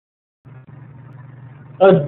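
Dead silence, then about half a second in a faint steady low hum of recording background noise comes in; near the end a man's voice says "uh" as he begins to speak.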